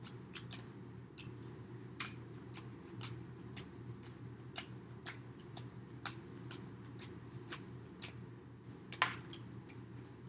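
A deck of tarot cards shuffled overhand by hand: soft, irregular card taps and clicks, with a sharper one about nine seconds in, over a steady low hum.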